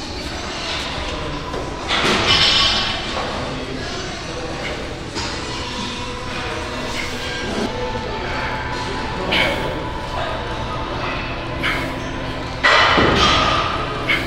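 Background music over gym noise, with a few thuds and knocks. There is a louder burst about two seconds in and another near the end.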